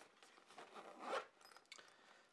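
Zipper of a fabric carrying pouch being pulled open: a quiet rasping run that builds to its loudest just past a second in, then trails off.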